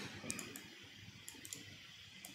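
A few faint, scattered clicks from a computer mouse, as a colour is picked and accepted in an on-screen colour picker.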